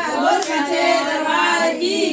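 A woman's voice singing a Hindu devotional bhajan to the goddess Sherawali: one long drawn-out phrase whose pitch bends and glides, with no drum under it.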